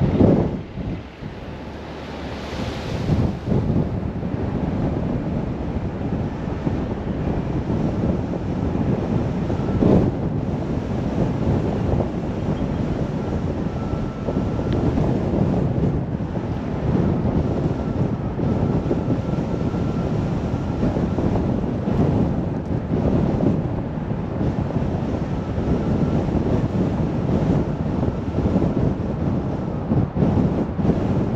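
Steady wind rumble on the microphone and road noise from a car driving at road speed, with a louder rush in the first few seconds as an oncoming dump truck passes.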